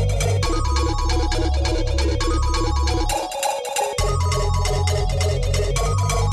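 Club electronic dance music played by DJs: heavy bass, fast steady hi-hats and a repeating riff of short, bright, bell-like notes. The bass drops out for just under a second about three seconds in, then comes back.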